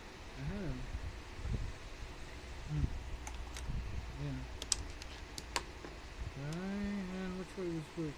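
A handful of sharp, light clicks around the middle, with wordless voice sounds from a man, the longest near the end.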